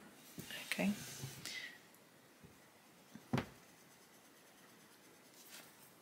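A soft "okay" with a faint rustle, then a mostly quiet room broken by one sharp tap about three and a half seconds in, from a coloured pencil being handled and put to the page.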